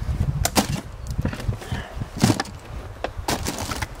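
Packaged produce and food containers being handled and set into a cardboard box in a truck bed: a handful of sharp knocks and bumps, the loudest a little past two seconds in, over a low, steady rumble.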